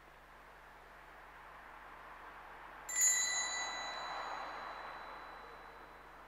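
A small altar bell struck once about three seconds in, a high, clear ring that dies away over a few seconds in the reverberant church.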